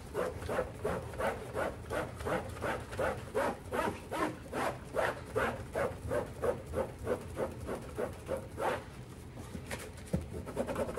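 Cloth wiped briskly back and forth inside a wooden drawer, a rhythmic rubbing of about three strokes a second.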